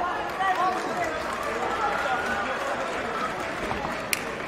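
Indistinct voices of people talking over a steady background hubbub of a crowd.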